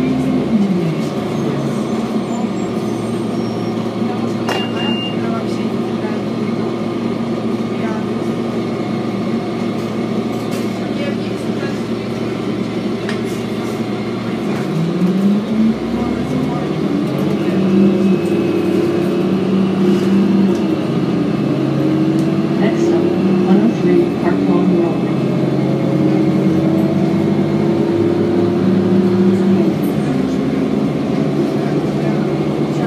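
2007 Orion VII diesel bus engine heard from inside the cabin while the bus is under way. The engine pitch drops with a gear shift just after the start, holds steady, then climbs again about halfway through as the bus accelerates, rising and dropping through further shifts.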